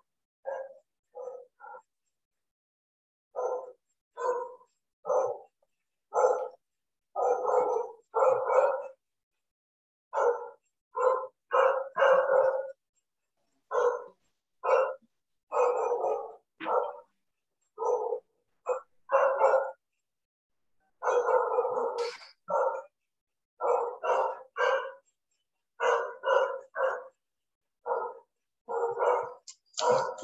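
A dog barking repeatedly, about one short bark a second at an uneven pace, sometimes two in quick succession, heard over a video-call connection that cuts to silence between barks.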